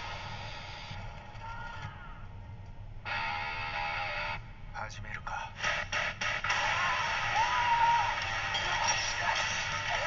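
Samurai action film trailer soundtrack playing back: dramatic music with a held chord, then a string of sharp hits, then a louder, denser mix with voices over the music.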